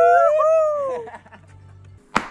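Two men howling together in one drawn-out call, their two voices at different pitches; it slides down and fades about a second in.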